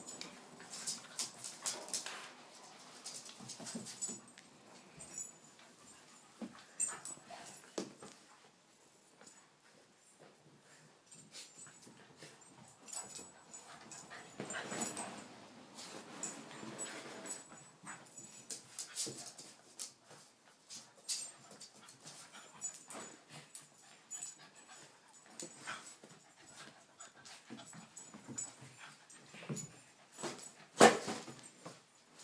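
A Cavachon and a Yorkshire terrier playing: quiet dog noises and scuffling in short, irregular bursts, with small clicks.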